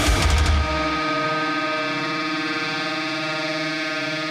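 A heavy metal track of electric guitar, through DiMarzio Titan pickups, and drums stops about half a second in. One final guitar chord is left ringing out, held steady and slowly dying away.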